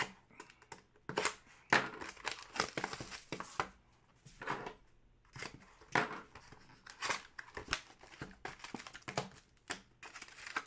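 Plastic shrink wrap being picked at, torn and crinkled off a sealed hockey card hobby box, in an irregular run of crackles, scratches and rips.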